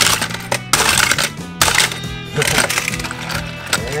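Background music, with three sharp plastic clatters in the first second and a half as die-cast toy cars are launched from the launcher's dispenser column onto its plastic track.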